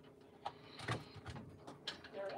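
Cables being handled and plugged in on a tabletop: three light knocks and clicks, the loudest about a second in, over a faint steady hum.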